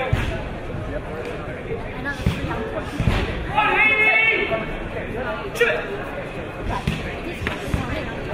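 Spectators calling out in a large, echoing sports hall, with one loud held shout a little past the middle and several sharp thuds of blows or feet on the mat scattered through.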